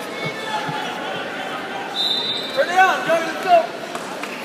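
Busy gymnasium noise with faint thuds on the mat. A short, high whistle blast comes about two seconds in, followed by voices shouting from the sidelines.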